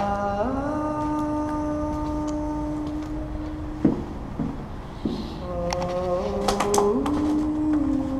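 A man's voice holding long, steady hummed or sung notes inside a concrete culvert: one long note over the first few seconds, a few short knocks in the pause, then another long note near the end.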